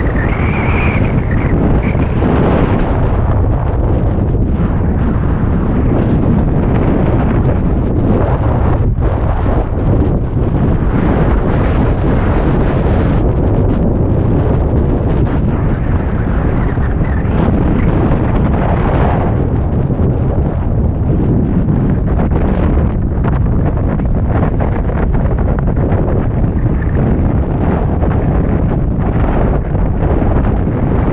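Loud, steady wind buffeting an action camera's microphone during a fast downhill ride, mixed with a snowboard scraping over groomed snow, swelling and easing as the board turns.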